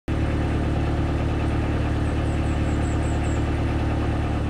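A narrowboat's diesel engine running steadily at low revs with an even knocking beat. A bird chirps faintly a few times in quick succession partway through.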